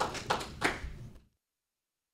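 A small audience applauding, the claps thinning out and then cut off abruptly about a second in, leaving dead silence.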